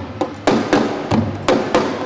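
African hand drums played with bare hands in a fast, even rhythm, about four sharp strikes a second.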